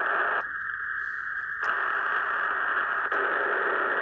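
Drake R-4B ham radio receiver playing steady band static through its speaker. About half a second in, a filter is switched in and the hiss turns thinner and higher, returning to full hiss about a second later, with faint switch clicks at the changes.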